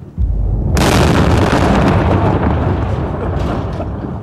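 Mine-clearing line charge detonating to clear buried IEDs: a deep boom just after the start, a harsher, wider blast joining under a second in, then a long rumble that slowly dies away.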